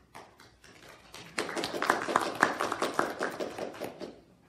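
A small group of people clapping, starting about a second in and dying away near the end.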